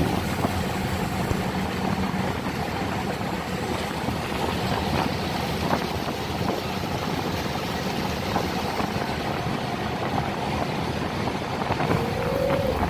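A boat's engine running steadily under way, a low hum under the rush of water along the hull.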